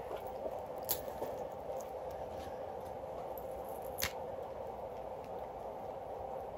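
Low, steady room hum with a few faint, sharp clicks, one about a second in and one about four seconds in, from costume jewelry being handled.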